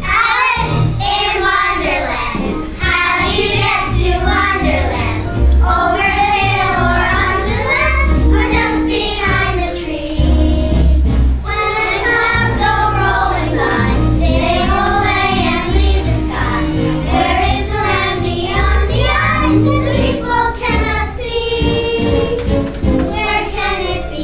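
A group of children singing a song in unison over a musical accompaniment with sustained bass notes.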